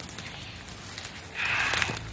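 Leaves and stems of dense weeds rustling, with scattered light snaps and crackles, as someone pushes through the brush on foot; a louder rustle comes about one and a half seconds in.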